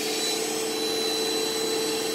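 An 8-amp electric vacuum cleaner running steadily, a constant motor whine over an even rush of air, powered from a van's battery through an inverter that it loads enough to pull the voltage down to 11.4.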